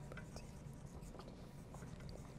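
Several pencils scratching on paper at once, in short irregular strokes, faint over a steady low room hum.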